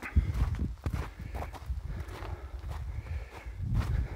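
Footsteps on snow, walking, heard as a series of uneven crunches over a low rumble.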